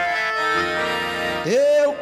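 Backing music with an accordion holding a chord between sung lines. Near the end a man's singing voice comes back in with a rising note.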